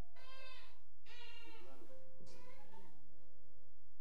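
A baby crying out in three short wails, each bending in pitch, over soft sustained instrumental notes.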